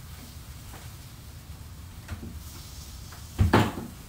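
A kitchen cupboard door shutting with a loud knock near the end, after a faint knock about halfway through, over a low steady room hum.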